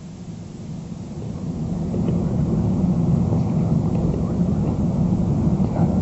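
Three quiz contestants conferring in low, overlapping voices, a jumbled murmur that grows louder over the first couple of seconds as they talk the answer over.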